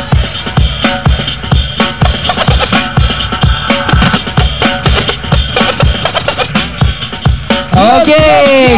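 DJ-played hip-hop breakbeat with a hard, steady drum beat and turntable scratching.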